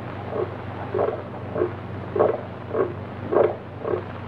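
Film sound effect of a heart beating: a steady, heavy pulse of just under two beats a second, each strong beat followed by a weaker one, over a low steady hum. It is the tell-tale heartbeat that the terrified man is listening to.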